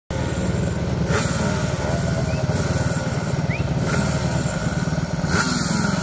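Motorcycle engines idling together on a race start grid, a steady low, evenly pulsing engine sound with no revving.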